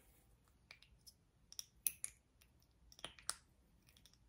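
Faint, irregular clicks of a Lawless Beauty Forget the Filler lip gloss applicator wand being worked in and out of its tube; the sound tells of a thick gloss.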